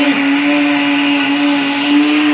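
Electric countertop blender running at high speed, liquidizing chopped plant leaves in water: a steady motor whine holding one pitch.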